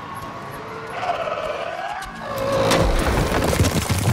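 Film sound effects of the acklay attacking: shrill, sliding creature cries, then, from a little past halfway, loud crashing and rumbling impacts as its claws strike the arena pillar.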